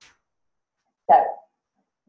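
Near silence, then a woman says a single short "So" about a second in.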